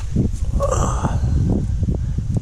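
Low, gusty rumble of wind on the microphone, with a short muffled sound a little under a second in.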